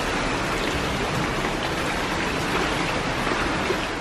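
Steady rushing ambience of an indoor swimming-pool hall, water noise with no distinct events, fading out near the end.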